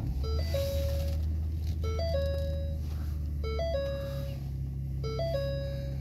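Ford SUV engine starting and settling into a steady idle, with the seatbelt reminder chime sounding over it: a short three-note figure (low, higher, then a held middle note) repeating about every second and a half, four times. The chime is the sign that the driver's seatbelt is unbuckled.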